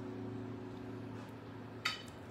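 A single sharp clink of a metal spoon against dishware near the end, as tomato sauce is spooned from a skillet onto a plate, over a faint steady hum.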